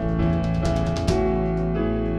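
Live band music without vocals: electric keyboard chords over bass guitar and drums. Drum hits come in the first second, then the chords are held.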